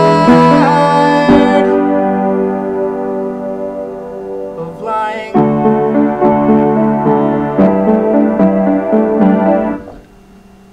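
Piano played in slow, held chords, right-hand octaves over left-hand bass notes, with a short sung phrase about five seconds in. The playing stops just before the end.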